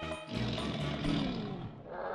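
Background music sting: a noisy rushing swell with a falling pitch that fades out about a second and a half in.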